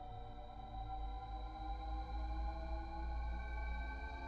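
Ambient background music: sustained drone tones over a deep low hum, the higher tones slowly rising in pitch.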